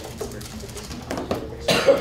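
A person coughing once, near the end, over a quiet murmur of voices in the room.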